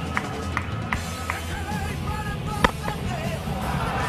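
Music with a steady beat, and a single sharp crack of a cricket bat hitting the ball about two-thirds of the way through.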